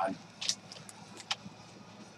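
Paper notebook handled close to the microphone: a short rustle about half a second in, then a few faint ticks and one sharp click.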